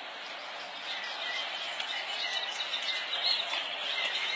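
Birds chirping over a steady outdoor background hiss.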